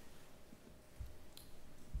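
A quiet pause with faint room hiss, a soft low thump about a second in and a faint sharp click just after.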